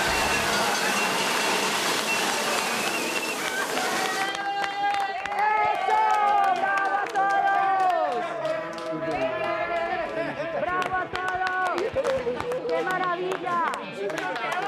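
A loud rushing hiss from the confetti cannon's air blast, cut off abruptly about four seconds in. After it, several people yell and whoop in celebration, with sharp claps among the shouts.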